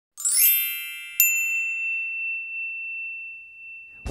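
Intro chime sound effect: a bright shimmering swell of high tones, then a single sharp ding about a second in that rings on and fades slowly.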